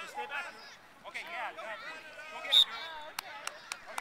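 Voices of adults and children calling out across a youth flag football field. A short, sharp, loud sound comes about two and a half seconds in, followed by a few quick sharp clicks near the end.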